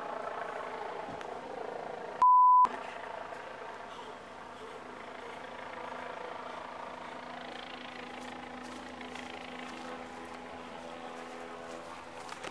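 A single loud censor bleep, a steady pure tone under half a second long, a couple of seconds in, blanking out a spoken word. Around it, the steady hum of vehicle engines running.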